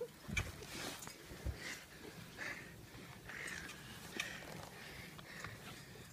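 Faint sounds of someone jumping on a trampoline: two low thumps about half a second and a second and a half in, with light scattered clicks and rustles.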